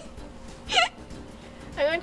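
A young woman's single short, high-pitched squeal of stifled laughter, falling in pitch, about a second in; more voice begins near the end.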